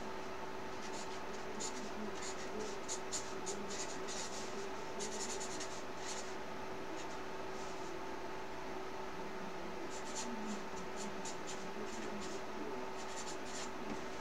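Marker pen writing on a paper poster: clusters of short pen strokes as letters are written, with a lull in the middle. A steady faint hum runs beneath.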